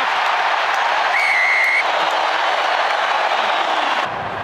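Stadium crowd cheering and applauding a try. A shrill whistle sounds once for under a second, a little after the first second.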